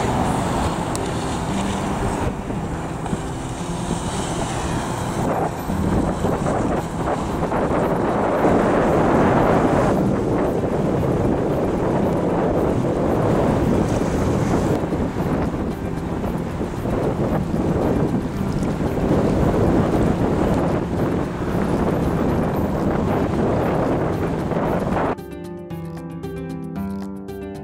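Wind buffeting the microphone over choppy water, loud and steady, with a faint music bed under it. About a second before the end the wind noise cuts off suddenly, leaving the music clear.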